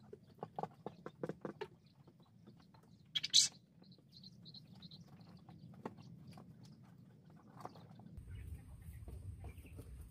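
Penned quail calling: one short, sharp call about three seconds in, then a few faint chirps. In the first second or two there are soft clicks and rustles of hands pulling the skin and feathers off a dressed quail.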